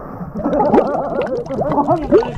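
Pool water churning, splashing and gurgling around a camera held at the waterline, with many quick bubbling chirps; it gets louder about half a second in as the splashing picks up.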